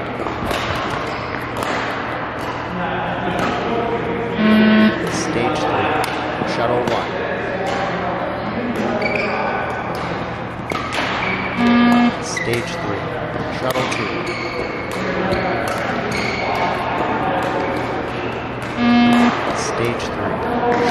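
Beep-test (20 m shuttle run) beeps: three short electronic tones about seven seconds apart, each marking the end of a shuttle at stage three. Between the beeps come running footsteps and shoe squeaks on the court floor.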